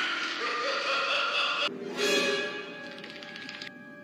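Movie soundtrack: a man's laughter played back distorted and warbling over an electronic hissing wash, breaking off a little under two seconds in. Eerie sustained tones from the film score follow and hold steady near the end.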